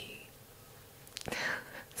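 Close-miked woman's soft breathy whisper. A few small mouth clicks come about a second in, then a short exhaled breath; the first second is quiet.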